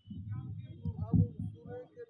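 Handling noise on a handheld microphone: low, rough rumbling and bumps as the mic is moved and lowered, loudest just past a second in.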